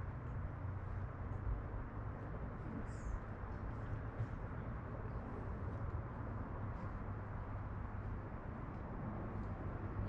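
Faint, steady outdoor background noise with a low rumble. Scattered faint ticks run through it, and a brief high chirp comes about three seconds in.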